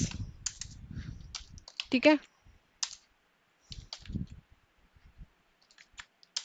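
Computer keyboard being typed on, a command entered key by key: separate, irregularly spaced key clicks with short pauses between them.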